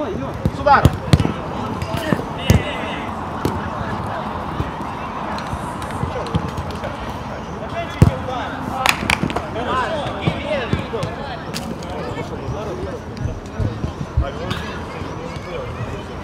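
A football being kicked during play: a series of sharp, irregular thuds, the loudest about eight seconds in, among players' shouts and calls.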